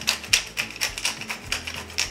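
Wooden pepper mill twisted back and forth to grind fresh peppercorns: a rapid run of clicks, about six a second.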